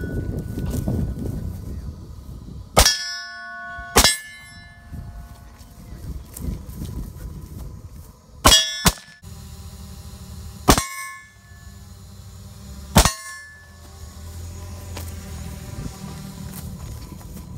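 Rifle shots from an AR-style semi-automatic rifle: six sharp reports at irregular intervals, two of them in quick succession near the middle. Several are followed by a brief metallic ring.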